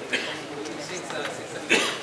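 A person in the audience coughing, one sharp cough near the end, over low voices and murmur from the crowd.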